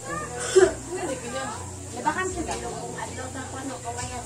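Indistinct voices talking in the background, with a low steady hum underneath.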